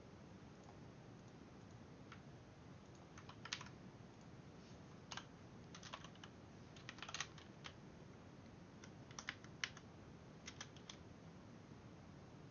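Computer keyboard keystrokes in scattered short bursts, typing commands into a text editor, over faint room tone.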